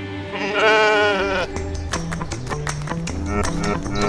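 A sheep bleats once, a wavering call lasting about a second, over background music that picks up a beat of sharp percussive strikes soon after.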